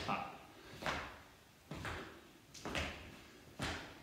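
Feet landing on the floor with each side-to-side speed-skater hop: five thumps, a little under a second apart.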